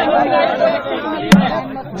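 Crowd chatter: several men talking over one another close to the microphone. A single sharp knock a little past halfway is the loudest sound.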